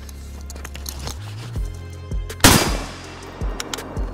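A single rifle shot from a PSA AK-47 GF3 in 7.62x39 about two and a half seconds in, sharp and ringing away briefly, over background music with a deep steady beat.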